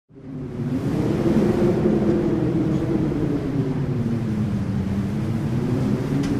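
Stock car V8 engines running at speed in a pack, fading in at the start, then a steady, slowly shifting drone of several engines together.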